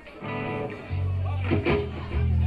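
Amplified electric guitar and bass sounding held low notes. About a second and a half in there is a short phrase with gliding pitch.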